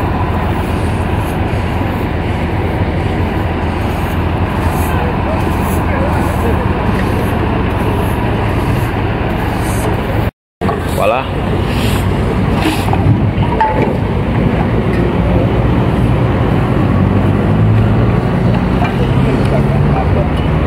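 Street noise with vehicle engines running and voices in the background. The sound cuts out completely for a moment about ten seconds in.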